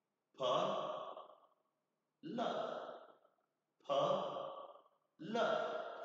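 A man's voice sounding out a breathy, drawn-out phonics sound four times, about every second and a half, each one fading away, with pauses between for listeners to repeat: the teacher is modelling the sound of the letter P.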